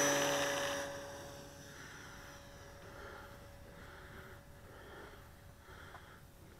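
E-flite P-47 Thunderbolt RC plane's electric motor and propeller whining at full throttle on the takeoff run. The whine holds one pitch and fades fast over the first second or so as the plane pulls away, then goes on faint and steady.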